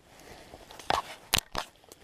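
A gloved hand handling the camera: a few sharp crunchy clicks and knocks, the loudest about one and a half seconds in.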